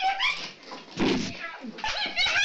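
High-pitched vocal cries and whimpers that glide up and down, with a dull thud about a second in.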